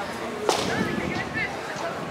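A single sharp crack about half a second in, over background voices.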